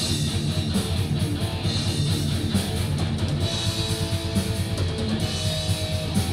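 Live metal band playing a loud, dense passage on distorted electric guitar and drum kit.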